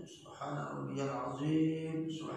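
A man's voice reciting Arabic prayer words in a slow, chant-like way, with syllables drawn out and a long held note near the end.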